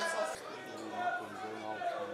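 Scattered voices of players and spectators calling out and chattering around a football pitch during play, overlapping with no one voice standing out.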